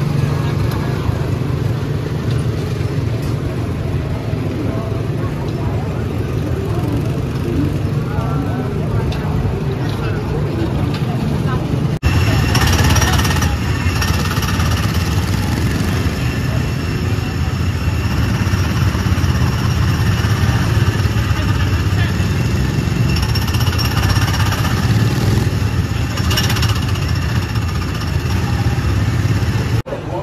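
Small gasoline engines of Tomorrowland Speedway cars running as the cars drive around the track, a steady engine drone. About twelve seconds in the sound jumps louder and picks up a steady high whine.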